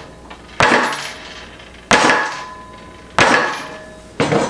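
Sledgehammer striking the reinforced toe of a safety work shoe resting on a wooden table: three heavy blows about 1.3 seconds apart, each dying away with a short ring.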